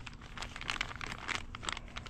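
Clear plastic parts bag crinkling in a hand, a steady run of small irregular crackles.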